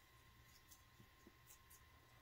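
Very faint crunching clicks, a few of them spread through the moment, over a low steady hum: a bearded dragon chewing a superworm, which is described as "so crunchy".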